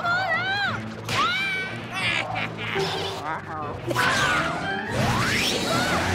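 Cartoon soundtrack: background music under short wordless character yelps and cartoon sound effects, with whooshes and hits, and a quick rising whistle-like glide about five seconds in.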